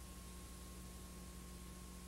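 Steady faint hiss with a low electrical hum and a thin, steady high tone: the blank, unrecorded stretch of a videotape playing back, with no programme sound.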